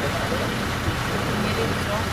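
A small group of people talking, voices overlapping, over a steady low rumble of road traffic.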